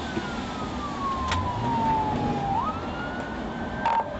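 Police car siren in a slow wail: its pitch falls over about two and a half seconds, then sweeps quickly back up. Underneath is the steady road noise of a car driving at speed.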